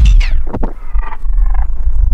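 A drum record on a Technics SL-1200 direct-drive turntable winding down after its start/stop button is pressed. The beat sags and slides down in pitch as the platter brakes, the highs fading after the first half-second.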